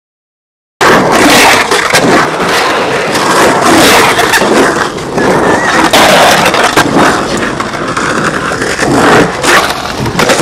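Silence for almost a second, then loud, continuous skateboard noise: wheels rolling over rough concrete and the board scraping along a concrete ledge, with scattered knocks.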